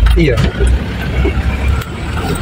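Truck engine and cab rumble heard from inside the cab while driving a rough dirt track, with a short knock just before the end.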